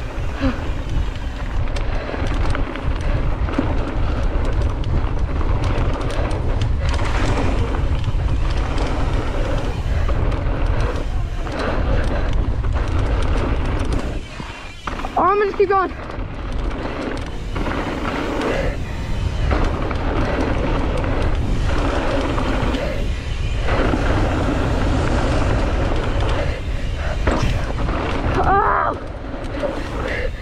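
Mountain bike descending a dirt trail at speed: steady wind buffeting on the rider's microphone and the rumble and rattle of tyres and bike over the packed dirt. A short vocal exclamation cuts through about halfway and another near the end.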